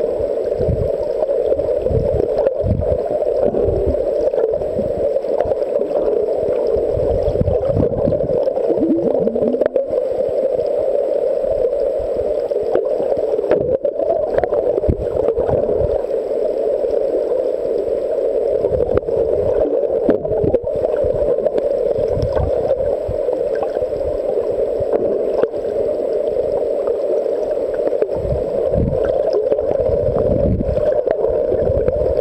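Muffled underwater noise picked up by a camera in a waterproof housing: a steady hum with irregular low thumps and surges of moving water.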